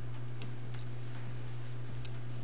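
A few faint clicks and ticks from a plastic bottle cap being unscrewed, over a steady low hum.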